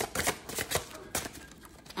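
A deck of tarot cards being shuffled: a quick run of crisp card clicks that thins out after about a second.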